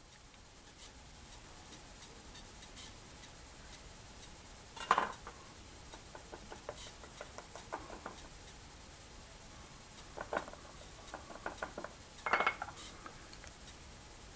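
Knife and wooden roller working a raw pork cutlet on a wooden cutting board: quiet scraping and scattered light taps, with one sharper knock about five seconds in and a few more clicks near the end.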